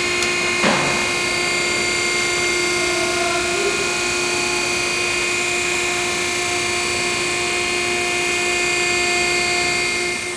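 Tire-removal machine for foam-filled tires running steadily: a constant motor hum with several steady whining tones, and a brief rasp about a second in.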